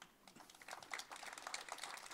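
Faint scattered clapping from an audience, made up of many quick claps that build slightly in level.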